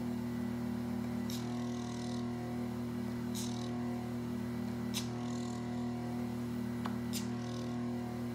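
A diamond-tip microdermabrasion machine's vacuum pump humming steadily, with a short soft hiss every second or two as the suction wand passes over the skin.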